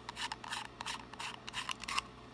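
Titanium suppressor end cap being unscrewed by hand, its fine threads scraping and clicking in a quick, irregular run of small sounds.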